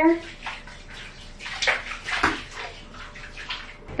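Powdered laundry detergent pouring from a scoop into a full bathtub of hot water: a soft, irregular hiss with scattered small splashes.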